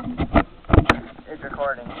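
Handling noise from a camera being moved on concrete: a few sharp knocks and bumps in the first second. A man's voice follows near the end.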